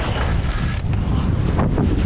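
Wind buffeting the camera microphone as a skier runs downhill at speed: a loud, steady rumble, with the hiss of skis scraping over wind-packed snow.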